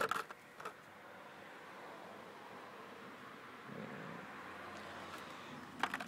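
Handling noise: a sharp click at the start and a softer one just after, then a faint steady hiss, with another click near the end.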